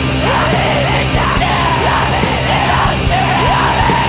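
Blackened punk band recording playing loudly, with a harsh yelled female vocal coming in shortly after the start over the full band.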